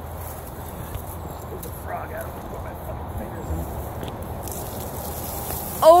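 Steady rustling and handling noise as a phone is carried through tall grass, with a few faint light clicks. A man's excited exclamation and laugh come in right at the end.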